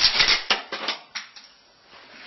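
Sharp clicks and rattling scrapes of a steel tape measure being retracted and set down on a concrete ledge, loudest at the very start and dying away after about a second.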